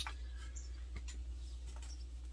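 A single light click as a drink can is set down on the ground, followed by a few faint, scattered ticks of small objects being handled over a steady low hum.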